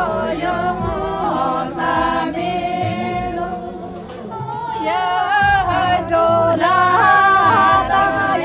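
A group of voices singing together without instruments, in long held notes. The singing drops off about halfway through and comes back louder a second later.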